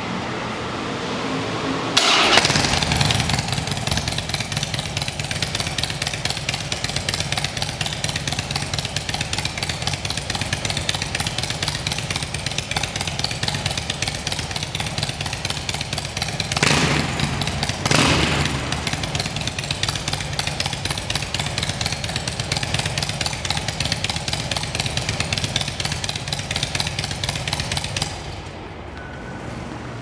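Harley-Davidson 96 cubic inch Twin Cam V-twin with Woods TW-555 cams and stock mufflers with the baffles removed starts about two seconds in, then idles with a steady rhythmic beat. It is revved twice in quick succession a little past halfway, then shut off near the end.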